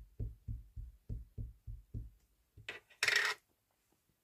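Small ink pad dabbed repeatedly onto a clear stamp on an acrylic block to ink it: a series of soft, dull taps, about three a second, stopping a little after two seconds. About three seconds in, there is a brief, louder scuff.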